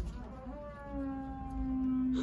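A motor-driven power tool running with a steady hum from somewhere else in the building, starting about half a second in. Its pitch settles slightly downward as it comes up to speed.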